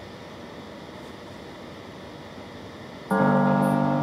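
Faint hiss, then background music: a held keyboard chord comes in suddenly about three seconds in.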